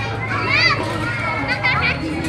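Children shrieking and calling out at play, with high rising-and-falling cries about half a second in and again near the end, over crowd chatter and a steady low hum.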